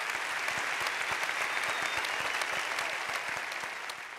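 A large audience applauding, a steady dense clapping that eases slightly near the end.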